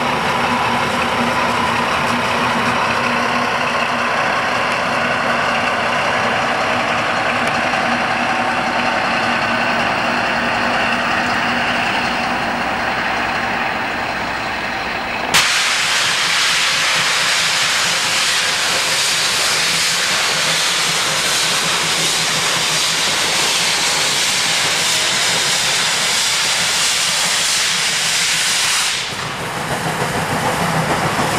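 Diesel locomotive idling, a steady engine drone with a low hum. After a sudden cut about halfway through, a steady loud hiss typical of steam escaping from a steam locomotive takes over and eases off near the end.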